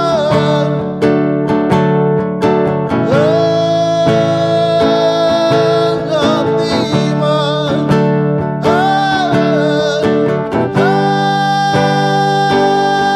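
A man singing with his own strummed acoustic guitar, holding a long note about three seconds in and another near the end.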